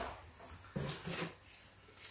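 Soft rustling as items are handled in a box, with a brief, soft whimper-like vocal sound about a second in.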